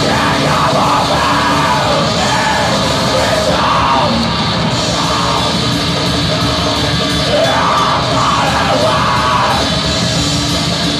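Black metal band playing live, with distorted guitars and drums under a harsh screamed vocal that comes in several phrases.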